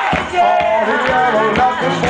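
Live blues band playing: drum kit keeping a steady beat of about two hits a second under a bending melodic lead line.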